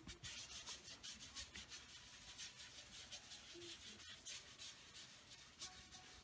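Faint, quick dabbing and rubbing of a small sponge on a glazed glass jar, lifting off some of the wet glaze.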